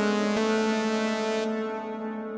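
Held synthesizer chord from u-he Zebra HZ played through its Rev1 reverb in MetalVerb mode, with a note change about half a second in. The highs drop away about a second and a half in as the chord starts to fade into its reverb tail.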